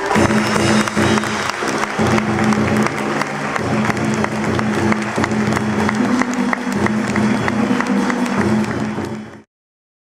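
Audience applause, a dense patter of many hands clapping, over live traditional Vietnamese music from the theatre's band. All sound cuts off abruptly about nine seconds in.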